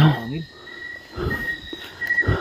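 Crickets trilling faintly in short spells. A man's voice trails off at the start, and a low voice-like sound comes about a second in.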